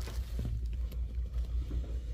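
Low, steady rumble of indoor background noise, with a few faint clicks.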